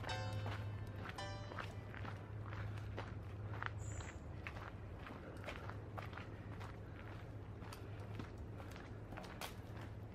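Footsteps on a dirt forest trail: a run of uneven steps throughout, under soft background music whose notes are clearest in the first second or so.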